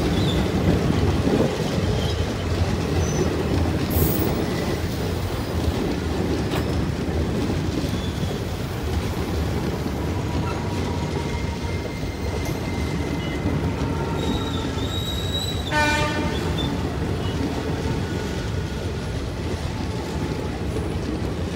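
Indian Railways passenger coaches rolling past close by: a steady rumble of wheels on the rails, with faint thin squealing tones from the wheels, and a brief high-pitched tone about three-quarters of the way through.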